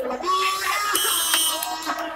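Crowd of spectators shouting and cheering over music playing through loudspeakers, with a short high steady tone about a second in.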